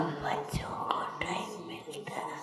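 A pause in a talk: faint, soft voices over the room noise of a large hall, with a couple of small knocks.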